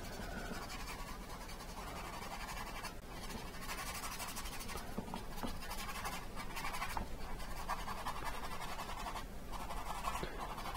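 Bristle paintbrush working acrylic paint on a stretched canvas: a soft, continuous scratchy brushing that swells and eases with the strokes.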